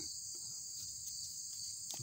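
Steady high-pitched chirring of insects, with a faint click near the end.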